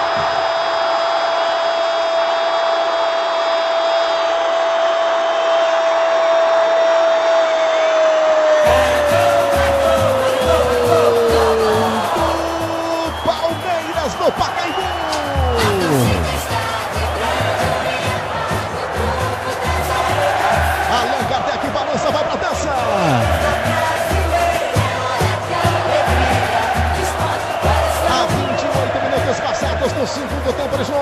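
Brazilian radio commentator's drawn-out "gol" shout for a goal: one long note held for about eight seconds, then sliding down in pitch. About nine seconds in, goal-celebration music with a steady beat starts and runs on under it.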